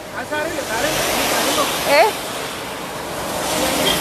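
A vehicle passing on a wet road, its tyres hissing on the wet asphalt, swelling to its loudest in the middle and easing off toward the end.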